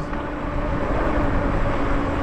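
Riding noise from a Lyric Graffiti e-bike under way: wind buffeting the microphone and tyres rolling on the road. A steady motor hum runs underneath.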